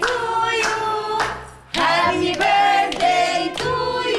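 A group of voices singing a festive song together over musical backing. The singing drops away briefly about a second and a half in, then resumes.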